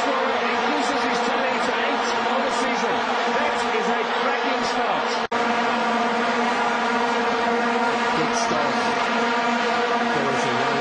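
Stadium crowd blowing vuvuzelas together: a continuous buzzing drone on one low note with many overtones. It cuts out for an instant a little past halfway.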